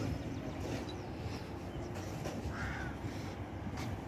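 A single short bird call about two and a half seconds in, over steady low background noise.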